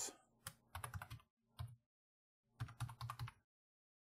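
Computer keyboard keystrokes as a password is typed, in a few short runs of key presses that stop about three and a half seconds in.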